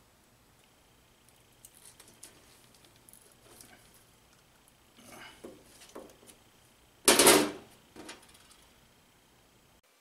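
Hand crimpers closing insulated ring terminals onto wire leads, with small clicks and handling rustles. The loudest sound, lasting about half a second, comes about seven seconds in, and a shorter one follows a second later.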